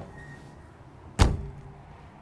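A horse trailer's drop-down window swung shut by hand, latching with a single sharp clunk a little over a second in. It shuts with a nice solid seal.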